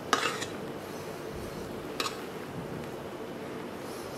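Spatula folding whipped egg whites into a cheese filling in a stainless steel bowl: soft scraping against the bowl, with a short scrape just after the start and a sharp tick of the spatula on the metal about two seconds in.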